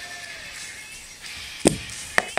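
A single sharp plastic click or tap about one and a half seconds in, as a marker and the clear plastic CD-spindle cover are handled, over a faint steady background.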